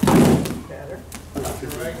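A judoka thrown with ippon seoi nage landing on the judo mat: one loud thud right at the start, dying away within about half a second.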